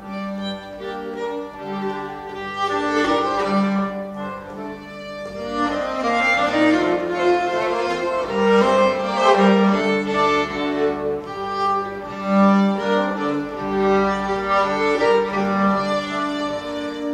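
Folk tune played by a trio of fiddle, nyckelharpa and accordion, the bowed melody over the accordion's held chords, growing a little louder about six seconds in.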